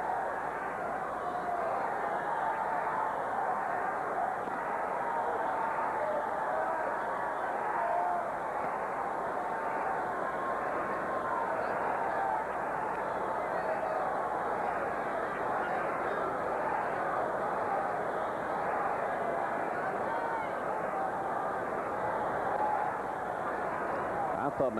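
Baseball stadium crowd: a steady murmur of many voices in the stands, with scattered individual calls and shouts rising out of it.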